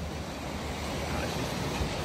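Steady wash of sea surf against breakwater rocks, with wind rumbling on the phone's microphone.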